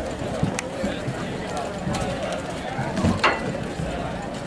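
Many people talking at once, their voices indistinct, with a single sharp knock a little after three seconds in.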